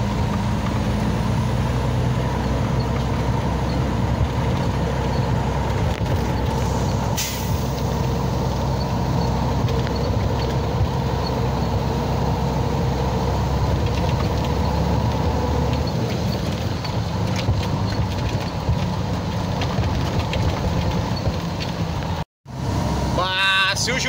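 Iveco truck's diesel engine running steadily as the truck drives slowly along a dirt road, heard from inside the cab, with a short hiss about seven seconds in. The sound cuts out briefly near the end.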